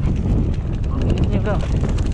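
Mountain bike rolling down a dirt singletrack: a steady rush of wind on the microphone over the rumble of the tyres on dirt, with rapid clicks and rattles from the bike.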